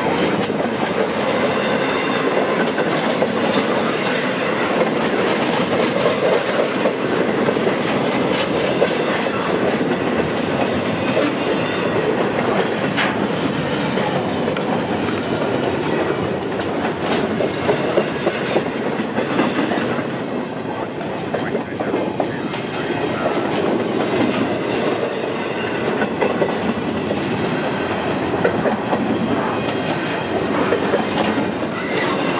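Double-stack intermodal freight cars rolling past close by: a steady, loud sound of steel wheels on rail with frequent clicks as the wheels pass over rail joints.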